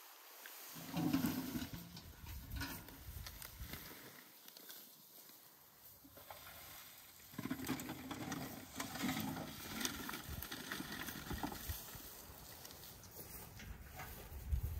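Green apples tipped from a metal bucket, thudding and knocking together as they fall into a plastic crate and then tumble onto a heap of apples. The clatter comes in two spells: a short burst about a second in and a longer run in the second half.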